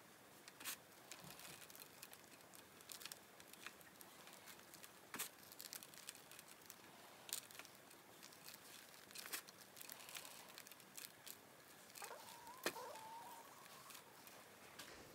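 Hand patting and rubbing a damp mud ball as it is shaped into a hikaru dorodango: faint, irregular light taps and rustles.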